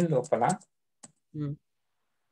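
Typing on a computer keyboard: a few keystrokes, with a single click about a second in. A voice speaks over the first half-second, and there is a short voiced sound shortly after the lone click.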